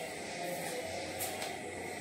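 Faint steady background hiss in a small kitchen, with a couple of soft light clicks as sugar is spooned in from a plastic container.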